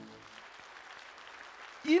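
Light applause from a congregation as the last held note of the song's accompaniment fades out. A man's voice starts speaking near the end.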